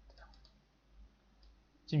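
A few faint, short clicks of a computer mouse, spread over the first second and a half.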